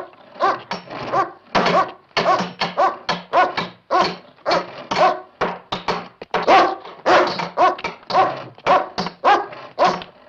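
A hungry dog barking over and over, about two barks a second.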